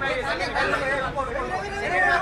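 Several people talking over one another, a mix of overlapping voices with no single speaker standing out.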